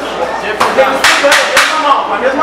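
Boxing gloves landing punches: four sharp smacks in about a second, starting just past half a second in.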